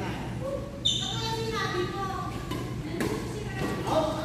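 Badminton play in an echoing gym hall, with voices in the room throughout. About a second in there is a sharp, high-pitched squeak, and near three seconds a single crisp click like a racket striking the shuttlecock.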